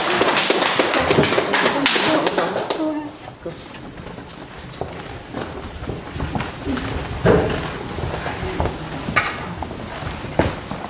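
Audience applauding, with dense clapping that dies away about three seconds in. After that it is quieter: scattered footsteps and taps on the wooden floor, with a few voices.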